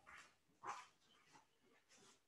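Near silence: room tone, with one faint, brief sound under a second in.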